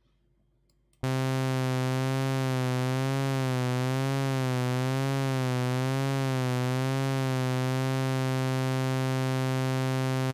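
A single sustained synthesizer note from SynthMaster One's initialized patch, starting about a second in. Its pitch wobbles slowly, a little more than once a second: vibrato from the vibrato LFO on oscillator 1 fine tune, brought in with the mod wheel. Near the end the wobble stops and the note holds a steady pitch.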